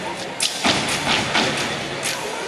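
A fraternity step team stepping in unison: several sharp stomps and claps in quick succession, ringing in a large hall over crowd voices.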